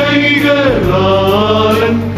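Male church choir singing a Malayalam hymn, the voices gliding between held notes.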